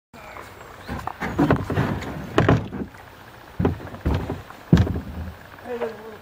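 Kayak paddle dipping and splashing in creek water: about six short, irregular strokes.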